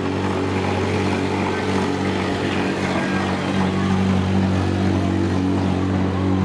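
Demolition derby van engines running with a steady low drone, the pitch holding level throughout.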